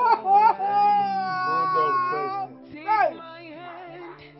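A woman wailing and sobbing in grief: a few short cries, then one long drawn-out wail, and a brief sob about three seconds in.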